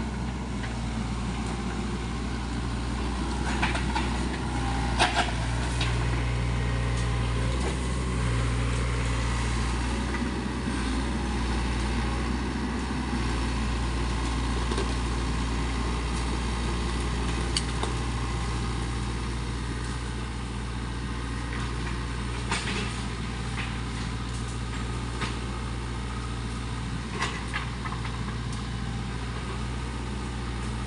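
SANY SY55C mini excavator's diesel engine running steadily, pulling harder for a stretch in the first half as the machine works through brush. A few sharp cracks stand out over the engine as vegetation and branches are crushed.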